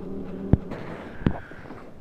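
Two short, sharp knocks about three-quarters of a second apart over a low, steady background noise.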